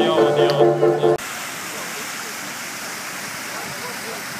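Dance music for about the first second, then a sudden cut to the steady rush of a fountain's water jets splashing.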